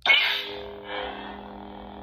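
Lightsaber ignition sound from a Proffie V2 soundboard played through the hilt's small speaker, triggered by a tap of the activation button: a sudden loud burst that falls away within about half a second, then settles into the blade's steady electric hum.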